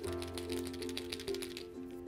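Derwent Graphik Line Painter paint pen shaken hard, giving a quick run of clicking rattles from inside the barrel, to mix the ink before the cleaned nib is primed again.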